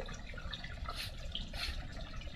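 Hydrogen peroxide faintly fizzing and crackling on freshly cut phalaenopsis orchid roots as it bubbles at the wounds, with two brief soft hisses about a second in and a little later.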